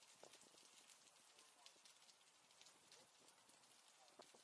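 Near silence: faint outdoor ambience from a moving bicycle, with scattered light ticks and clicks and faint voices.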